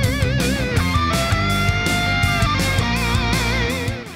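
Background rock music: electric guitar holding long notes with wide vibrato over bass and a steady drum beat.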